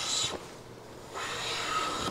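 WoodRiver #5-1/2 bench plane cutting along the edge of a red oak board, its sole freshly waxed to cut friction. One pass of the blade ends just after the start and another begins about a second in, taking a full-width shaving, the sign that the edge's twist has been planed out.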